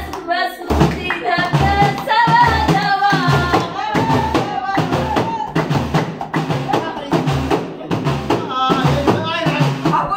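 Voices singing together over hand-struck frame drums beating a steady rhythm of about two strokes a second, with hands clapping along.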